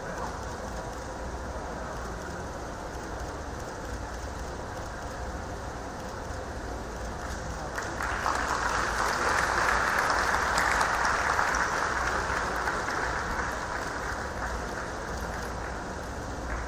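Audience applauding, starting a little past halfway, swelling and then fading away, over the steady background noise of a large hall.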